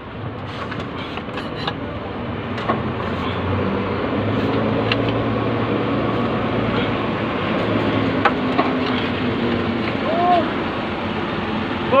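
Steady motor-vehicle rumble with a low hum, growing louder over the first few seconds and then holding, with scattered short clicks and knocks.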